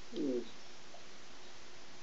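One brief low murmur falling in pitch, then steady background hiss on the line.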